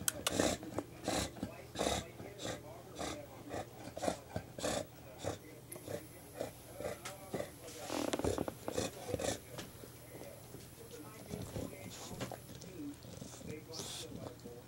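An English bulldog chewing and mouthing a plush toy, with wet, noisy sounds repeating about twice a second, then a louder burst around the middle.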